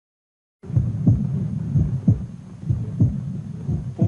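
Silence for about half a second, then a heartbeat sound: low thumps in pairs, the heavy beat coming about once a second, over a low hum.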